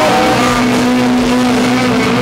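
Live rock band playing loud, with a distorted electric guitar holding one long note from about half a second in, while a second pitched line wavers up and down above it.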